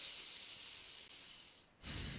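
A woman breathing softly through one nostril, the other pressed shut with a finger, in alternate nostril breathing. One long airy out-breath is followed after a short pause by a second breath near the end.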